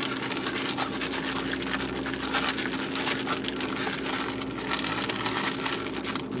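Plastic bag of udon noodles and ponzu being shaken vigorously by hand, giving a continuous crinkling rustle of plastic.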